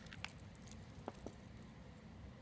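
A few faint clicks and clinks of small, tangled metal ear cuffs being handled.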